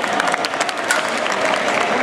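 Spectators applauding at a dog agility ring, a dense patter of many hands clapping.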